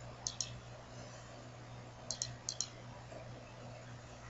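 Computer mouse button clicked in three quick double-clicks: one near the start and two more about two seconds in, over a faint steady low hum.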